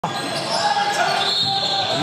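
A basketball being dribbled on a hardwood gym floor, a few separate bounces, with voices in a large, echoing hall.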